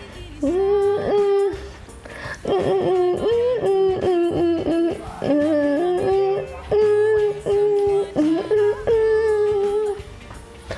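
A young girl singing solo over soft backing music, holding long notes joined by quick runs, with a short pause about two seconds in.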